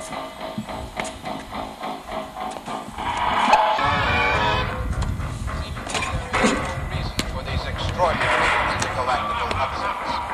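Music with singing, over a low rumble that comes in about four seconds in.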